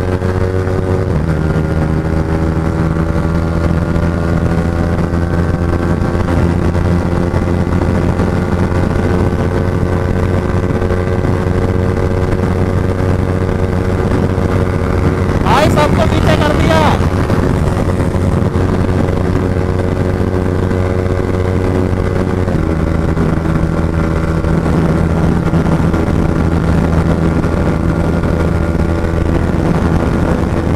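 Yamaha R15's single-cylinder engine running hard at high, steady revs on the highway, with wind and road rush. The note shifts slightly about a second in and again about 22 seconds in. A brief, louder rush of noise comes about halfway through.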